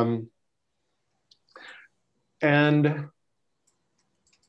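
Speech only: a man's drawn-out "um" at the start, then after a pause of about two seconds a held "and", with near silence between.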